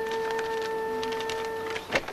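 An electric doorbell buzzing in one steady, unbroken tone that cuts off near the end, followed by a short click.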